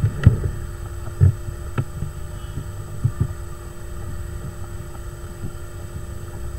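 Steady low electrical hum from the recording setup, with a few soft, low knocks and clicks scattered through it.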